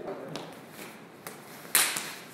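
Sharp slaps of a kung fu partner drill, hands or shins striking a partner's arm or leg. There are three, two light ones and then one loud smack near the end.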